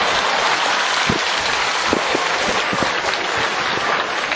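Steady, dense noise like a crowd clapping, with scattered single claps or knocks standing out.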